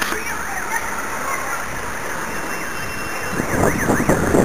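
An electronic alarm siren wailing, its pitch sweeping rapidly up and down about three times a second, over steady background noise.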